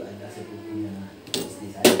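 Kitchen clatter: a short knock about a second and a half in, then a louder cluster of sharp knocks near the end, over a faint background murmur.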